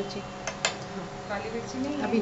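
A metal spoon clicking twice against a plate about half a second in, as chopped vegetables are scraped off it into a frying pan, with a woman's voice talking.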